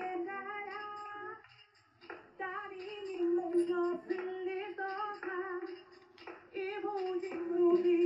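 A song with a woman singing, in sung phrases broken by short pauses about two seconds in and again near six seconds.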